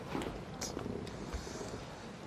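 Quiet room tone: a steady low hum with a couple of faint light clicks.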